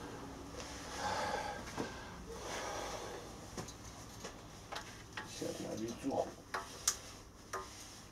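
Faint scattered clicks and knocks from a heavy steel-spring power twister being gripped and bent under a hanging weight plate, with a few low murmured voice sounds.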